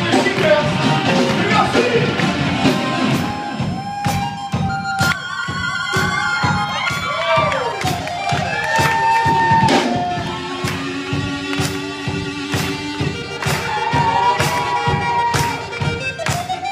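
Live band music at full volume: electric guitar and keyboard over a steady drum beat of about two strikes a second, with long notes that slide and bend through the middle.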